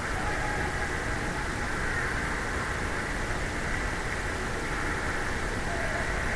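Steady ice-rink background noise: an even hum and hiss with no distinct puck, stick or board hits.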